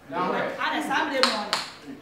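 Voices arguing, with two sharp hand claps a little past the middle.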